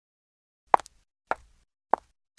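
Three brief pops of a cartoon sound effect, a little over half a second apart, with silence between them.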